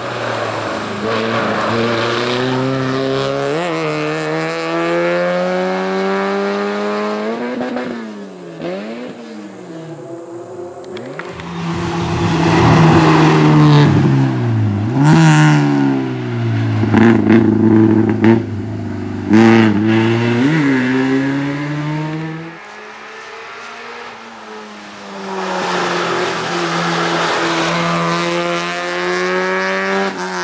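A race car's engine revving hard through a cone slalom, the pitch climbing and dropping again and again as the driver goes on and off the throttle. It is loudest in the middle as the car runs close by.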